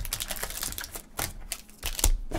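Rapid, irregular clicking and crackling of cardboard card boxes and wrapped trading card packs being handled and opened by hand.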